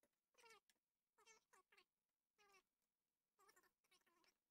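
An animal's faint, short, high-pitched cries, repeated several times with brief gaps.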